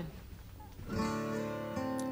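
Background music from the show's score with strummed acoustic guitar and sustained notes, coming in about a second in over a low rumble.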